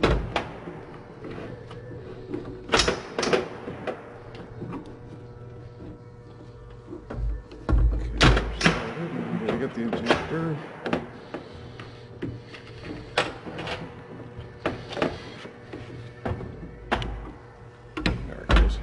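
Irregular metallic knocks and clicks as steel rocker arms and a rocker shaft from a Detroit Diesel Series 60 engine are handled and set down on a steel workbench, the loudest cluster about eight seconds in, with music playing in the background.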